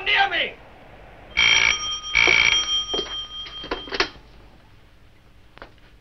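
Old electromechanical telephone bell giving one double ring: two short bursts about a second and a half in, the bell's tone dying away over the next second or so.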